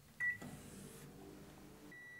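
Samsung microwave oven's keypad beeps once as it is started. The oven then runs with a faint, steady hum.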